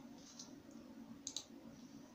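Faint computer mouse clicks, a quick double click about a second and a quarter in, over a faint steady low hum.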